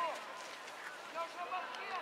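High children's voices shouting and calling on a football pitch: short overlapping cries from several young players during play, none forming clear words.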